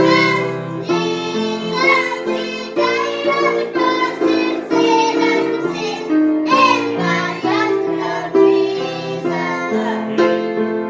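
Children singing with a grand piano accompanying them, one continuous song with no break.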